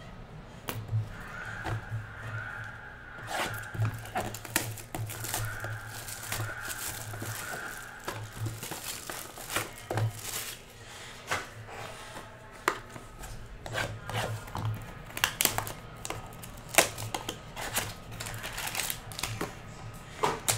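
Clear plastic shrink wrap being torn and crinkled off a sealed trading-card hobby box, a run of irregular crackles and rustles.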